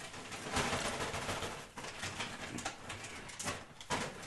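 Close-miked chewing and lip-smacking of a person eating, a steady run of small wet, crackly mouth noises.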